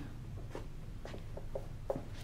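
Dry-erase marker writing on a whiteboard: several faint short strokes over a low steady room hum.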